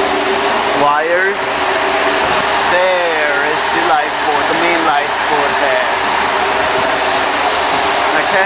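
A steady machinery drone and hum on a ship's deck, with indistinct voices over it.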